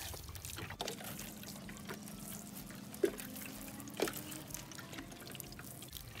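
Water pouring from a watering can onto loose garden soil around a freshly planted tomato, a steady soft trickle. A couple of brief sharper clicks stand out about three and four seconds in.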